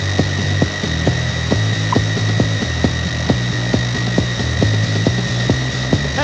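Instrumental passage of live post-punk band music with no vocals: a fast, even drum beat, a deep repeating bass line and a steady high synthesizer drone.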